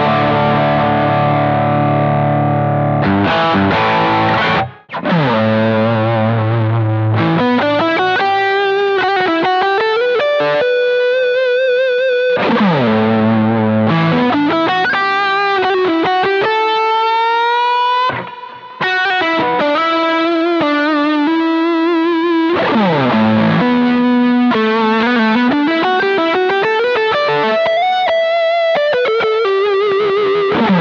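PRS McCarty 594 electric guitar played through a distorted Boss GX-100 patch: ringing chords at first, then single-note lead lines with notes bending and sliding up and down, broken by two short gaps about five and eighteen seconds in.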